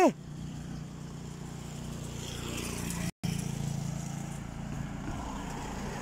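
A car driving past on the road, its tyre and engine noise growing louder for about three seconds, then, after a brief silent gap, fading away.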